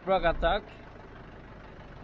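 A man's voice for about half a second, then a steady low rumble of outdoor background noise, of the kind a nearby idling truck engine or wind on the microphone makes.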